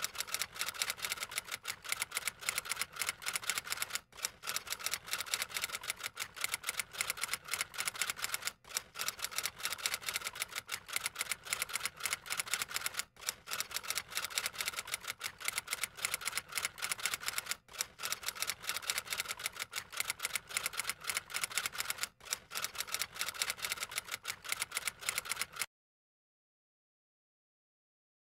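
Typewriter keys clacking in rapid, steady runs, with a short break about every four and a half seconds. It stops just before the end.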